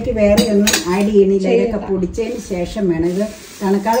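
A stainless-steel pan being handled and tilted on a stone countertop, with light metal knocks and scraping, under a woman's talking voice; about three seconds in there is a short rustling, scraping noise while the voice pauses.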